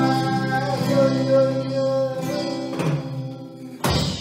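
A man singing with a classical acoustic guitar and an electronic drum kit, holding a long final note over the guitar that fades away, then one sharp closing hit near the end as the song finishes.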